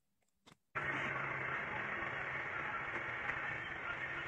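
Near silence with a few faint clicks, then about three-quarters of a second in a steady background hiss with a low hum starts abruptly and runs on. This is room noise picked up by the recording.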